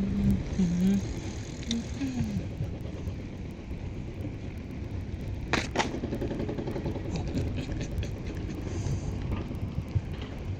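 Wind buffeting the microphone during a ride, a steady low rumble. A voice sounds briefly in the first two seconds, and a sharp click comes about halfway through, followed by a short ringing tone.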